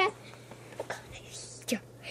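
Faint whispering and breathy sounds from a person in a quiet lull between spoken lines, with a few small soft clicks and a steady low hum underneath.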